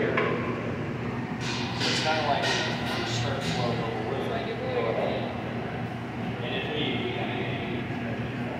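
Short puffs of breath blown into a glassblowing blowpipe to inflate the hot glass gather, clustered a second and a half to three and a half seconds in, over the steady drone of the studio's furnaces and fans.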